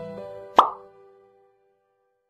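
Background music fading out. About half a second in, a single short, sharp pop sound effect cuts in, the loudest sound here.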